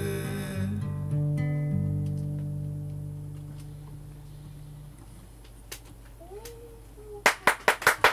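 Acoustic guitar ending a song: a final chord rings out and fades away over about four seconds. Near the end, hand-clapping starts up.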